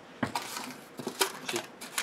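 Kitchen handling sounds: a sharp metal clink about a quarter second in, as the stainless steel mixing bowl is knocked or set down, then several lighter clicks and taps while paper cupcake liners are handled.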